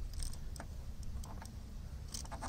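Fingers pressing vinyl overlay film onto a plastic grille bar: faint, scattered small ticks and crackles over a steady low rumble.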